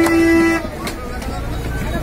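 A vehicle horn held in one long steady blast that cuts off about half a second in, followed by a couple of sharp knocks of chopping on a wooden block.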